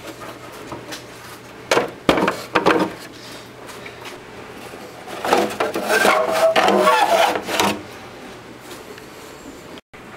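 Plastic engine cover of a BMW E46 325i being pulled up off its rubber grommet clips: a few sharp knocks about two seconds in, then a stretch of plastic rubbing and scraping with faint squeaks from about five to nearly eight seconds in as the cover comes free.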